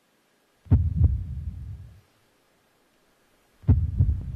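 Two deep, booming bass hits about three seconds apart, each a sharp thud that rumbles away over about a second, like a heartbeat sound effect.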